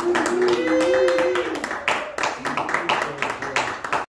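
Audience clapping at the end of a song, with one voice calling out a long wavering cheer during the first second and a half.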